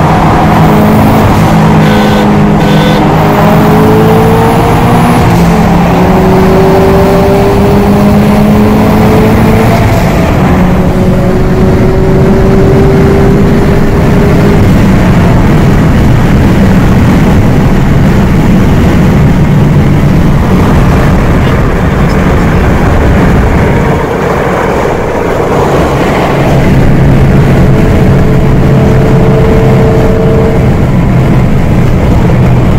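Turbocharged 2015 Subaru BRZ's flat-four engine heard from inside the cabin, pulling hard with its pitch climbing through the first ten seconds. It then settles into steady running at highway speed with heavy road and wind noise, easing off briefly near the end before picking up again.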